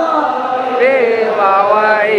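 A man's voice chanting a religious chant into a microphone, held on long sung notes with a wavering, melismatic ornament about a second in and again near the end.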